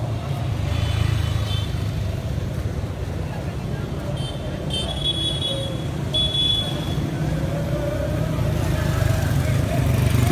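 Street sound with motorcycle engines running past over a steady low traffic rumble, voices in the background, and a few short high-pitched tones.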